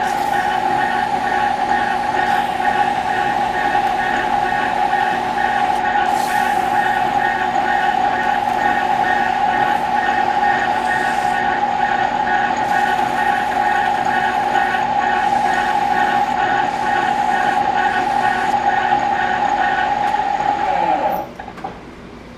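Victor engine lathe running with a steady gear whine and a fast pulsing above it, while a strip of abrasive cloth is held against the spinning motor shaft to polish it. Near the end the lathe is switched off and its whine drops as it spins down.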